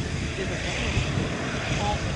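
Jet engines of a Boeing 787-8 airliner running as it rolls past, a steady broad rush with a low rumble, and wind buffeting the microphone.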